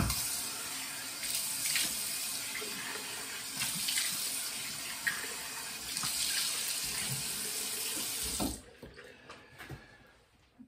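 Bathroom sink tap running with water splashing as hands rinse the face after a shave. The flow stops about eight and a half seconds in.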